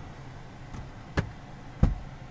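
Two short, sharp clicks about two-thirds of a second apart, the second louder: a car's sun visor being swung back and snapped into its clip, over a steady low cabin hum.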